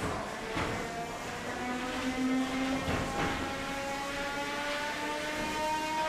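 A 3 lb combat robot's spinning weapon whining, its pitch slowly rising as it spins up. A few sharp knocks, the first right at the start, as the robots hit each other and the arena.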